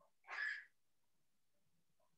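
One short, soft, breathy sound from a person, like a quick exhale or a murmur under the breath, about a quarter of a second in. The rest is near silence.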